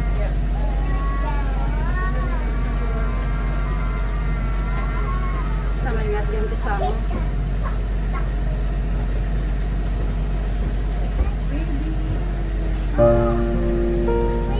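Small passenger ferry's engine droning low and steady, heard from inside its cabin, with voices in the first half. Music comes in near the end.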